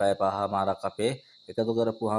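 A man speaking Sinhala in short phrases with a brief pause in the middle, over a faint steady high-pitched tone that runs continuously underneath.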